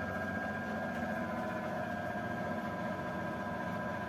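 Steady low hum of a household appliance running, with a few faint steady tones and no distinct events.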